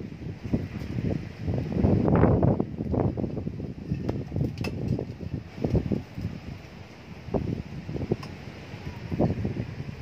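Wind buffeting the microphone in irregular gusts, with rustling and small crackles from the soil and roots of a bonsai being handled into its pot.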